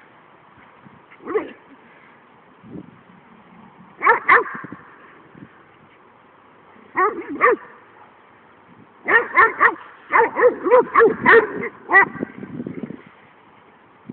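A dog barking in short, high yips: a single one, then pairs a few seconds apart, then a quick run of about a dozen in the last few seconds.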